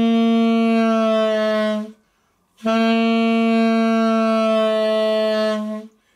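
Saxophone holding two long notes on a G, separated by a short break about two seconds in. Each note sags slightly in pitch as the player relaxes his embouchure on the reed, an exercise in bending a note down before learning vibrato.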